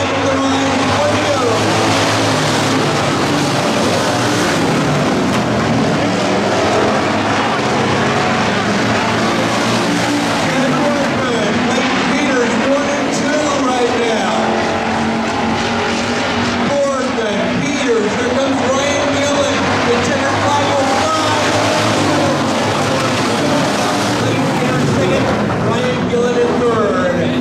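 A pack of dirt-track hobby stock race cars racing. The engines form a continuous loud wall of sound, their pitch rising and falling again and again as the cars accelerate and back off through the laps.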